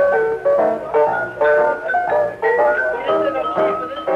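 Live small-group swing jazz on an old home tape recording, with vibraphone playing a quick run of ringing notes over piano and rhythm.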